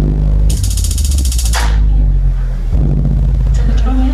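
Live electronic music: a deep, sustained synthesizer bass, with a burst of bright hissing noise about half a second in that lasts about a second and fades, and a new bass note coming in near the end.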